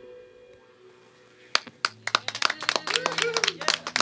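The last chord of an electric guitar band fading out, then a few people clapping, starting about a second and a half in.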